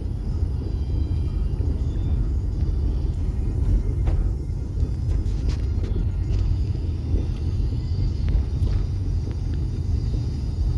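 Steady low road rumble of a car driving on a paved road, heard from inside the cabin.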